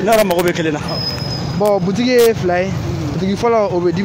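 A man talking, with the hum of street traffic and passing cars and motorbikes behind his voice.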